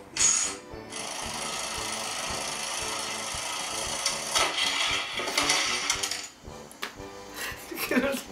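Perfection board game's spring-wound timer running, a fast, steady mechanical ticking that lasts about five seconds and stops a little after the sixth second.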